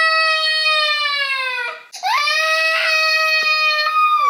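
A young child crying in two long, high wails, each held at a steady pitch for about two seconds and dropping off at the end; the second starts about two seconds in.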